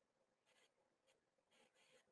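Near silence: a pause between sentences, with only faint room tone.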